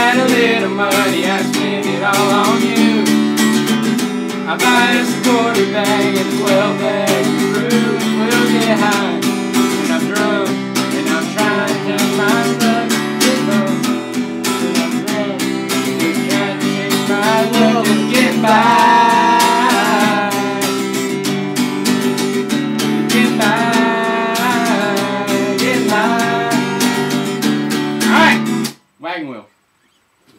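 Several acoustic guitars strummed together in a country song, with voices singing along loosely. The playing stops abruptly about two seconds before the end, and a short vocal call follows.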